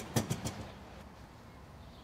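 A few quick clicks and knocks in the first half second, then faint steady background noise.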